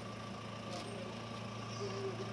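A motor running steadily, giving a low, even hum.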